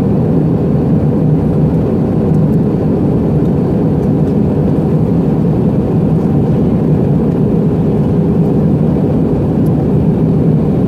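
Steady cabin noise inside an Airbus A319 airliner in flight during descent: a loud, even, low rumble of jet engines and airflow, heard from a window seat.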